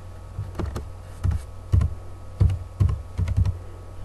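Typing on a computer keyboard: about ten uneven keystrokes over three seconds as a short word is typed.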